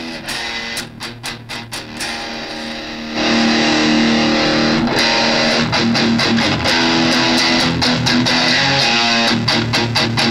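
Donner DST-1S electric guitar played through its pack's small practice amp with the gain turned up: lighter picked notes at first, then at about three seconds louder, sustained chords ringing out.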